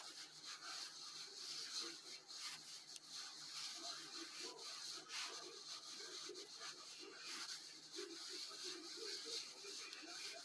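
Faint, irregular rubbing and scratching of cotton yarn being drawn through stitches and over the crochet hook and fingers as a round is crocheted.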